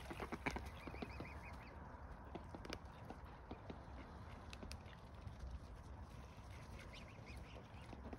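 Mute swans and cygnets preening: faint rustling of feathers with scattered soft clicks as bills work through the plumage.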